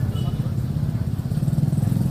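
A small engine running steadily, with a low, fast, even throb.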